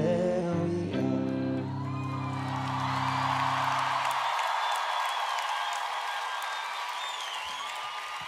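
A final guitar chord rings out and stops about halfway through, as a crowd cheers with whistles and applause that carry on to the end.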